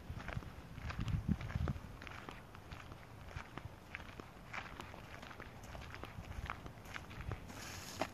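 Footsteps of people walking over dry leaves and dirt, irregular steps with some heavier thuds about a second in.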